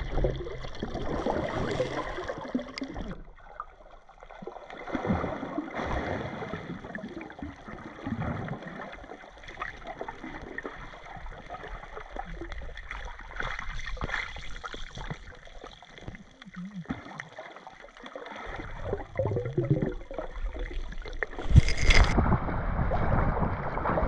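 Water heard from an underwater camera: a muffled, uneven wash of water movement and bubbling as swimmers kick along the sandy bottom. About 21 seconds in, the camera breaks the surface and the sound jumps to loud, open splashing.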